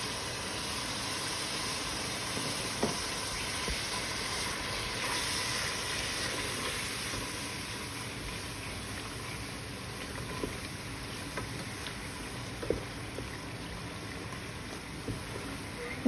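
Onion and tomato masala sizzling steadily in a pot as the freshly added spices cook in, with a few faint taps of a wooden spoon against the pot.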